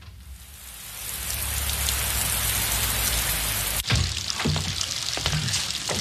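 Heavy rain falling, fading in over the first second. About four seconds in it changes abruptly to rain heard indoors, with water dripping and splashing through a leaking roof.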